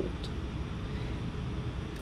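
Steady low roar of a glassblowing hot shop's equipment: furnace and glory-hole burners with ventilation fans running.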